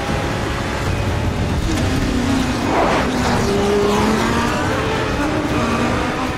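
A car engine passing by, the noise swelling to its loudest about three seconds in, with its pitch gliding.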